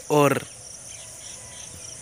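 A man says one short word at the start; then, in the pause, a steady high-pitched chorus of insects, crickets by their sound, chirrs without a break.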